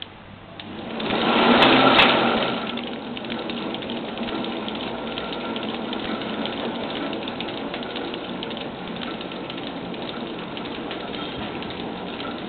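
Rotary numbering printing machine starting up about a second in, surging briefly, then running steadily with a dense, rapid clicking from its turning numbering head and shafts.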